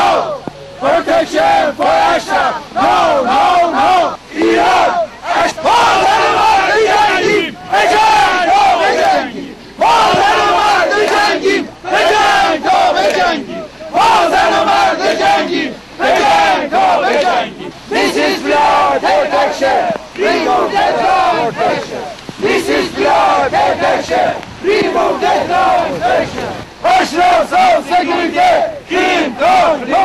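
A crowd of protesters shouting slogans in unison, with fists raised. The chant comes phrase after phrase, with short breaks between the phrases.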